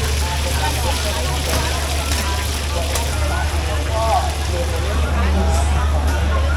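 Oil sizzling on a large flat griddle of frying hoy tod (crispy shellfish omelettes), over a steady low rumble, with a crowd chattering in the background.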